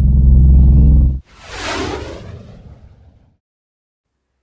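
Intro sound effect of a small propeller plane: a loud, low engine drone with a fast pulse, cut off about a second in by a whoosh that fades over about two seconds.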